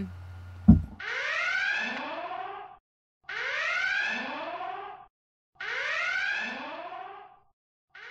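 Red-alert klaxon sound effect: three long whoops that rise in pitch, a little over two seconds apart, with a fourth starting at the very end. A short sharp click comes just before the first whoop.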